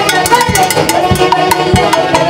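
Live band music: a saxophone section playing the melody over timbales and drums keeping a steady beat.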